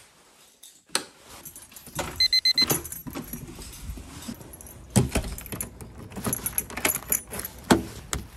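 Keys jangling, with clicks and knocks of a door's lever handle and latch as a front door is opened. A short run of rapid high electronic beeps sounds about two seconds in.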